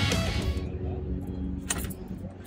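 Rock music cuts off in the first half second, leaving a low outdoor rumble. Near the end come a few short clicks and jangles from a bunch of car keys as a car door is opened.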